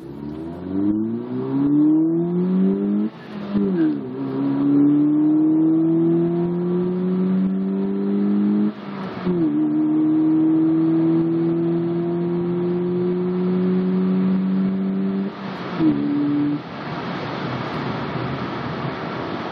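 2010 Mazda 3's 2.0-litre four-cylinder engine pulling hard at wide-open throttle through a Simota carbon-fibre short ram intake, heard inside the cabin. The revs climb steadily in each gear, with shifts dropping the pitch about three and nine seconds in. A last shift comes near the end, then the throttle lifts and only road and wind noise remain.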